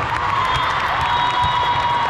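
Crowd noise of a busy indoor volleyball hall: many overlapping voices and shouts from players and spectators, with scattered knocks from balls, echoing in the large hall.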